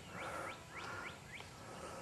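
Faint bird calling in a quick run of short rising chirps, about three a second, that stops a little past the middle.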